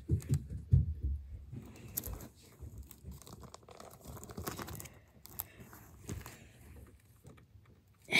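Plastic sleeve pages of a trading-card ring binder crinkling and rustling as they are handled and turned, with soft handling bumps in the first two seconds and a few sharp clicks later.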